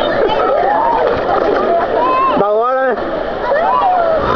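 Voices of people talking and calling out over one another, with one drawn-out, wavering call about two and a half seconds in.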